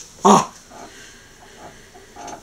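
A person's short vocal yelp, about a quarter of a second in, followed by faint room sound.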